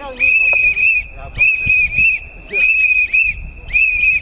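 A shrill whistle blown in short rhythmic blasts, two or three at a time, about once a second, over a low background rumble.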